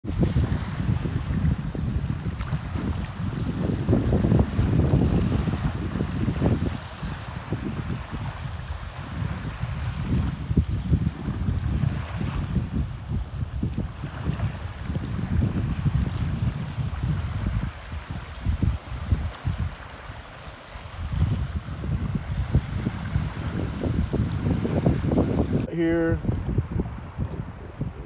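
Gusty wind buffeting the microphone, swelling and dipping, over choppy waves washing in.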